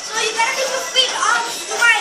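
Children's high-pitched voices shouting and squealing over one another, with sharp rising cries about a second in and again near the end.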